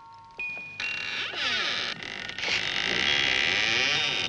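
Eerie film soundtrack music: a few tinkling, chime-like notes, then a shimmering high wash that swells about a second in and grows louder.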